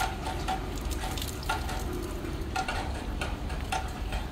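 Water splashing and trickling on wet concrete during an outdoor hose bath, a steady crackling hiss, with a few short squeaks scattered through it.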